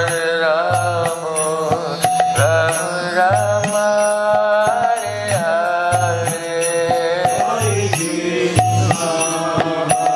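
Devotional kirtan: a man chanting a melodic, gliding refrain over a steady drum beat and regular small cymbal strikes.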